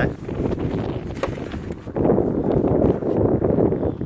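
Wind buffeting the microphone: an uneven low rumble that grows stronger about halfway through, with a single short click about a second in.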